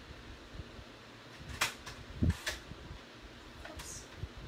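Papercraft supplies being handled on a desk while a fresh piece of paper is fetched: a few light knocks and clicks, over a faint steady room hum.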